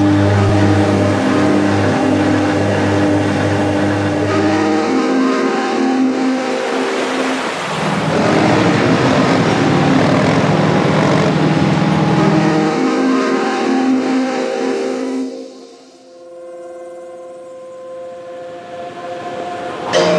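Soundtrack music of sustained drones and long held notes, with a dense rushing noise swelling up in the middle. About three quarters through it drops away to quieter held tones.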